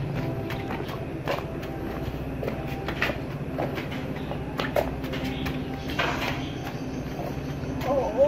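Small motorbike engine running steadily at low speed, with scattered clicks and knocks over it.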